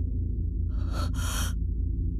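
A sharp, breathy gasp in two quick breaths about a second in, a character's shocked intake of breath, over a low steady drone in the score.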